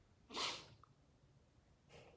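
A single short, sharp breath from the reader, lasting about half a second, followed by a much fainter breath just before the end.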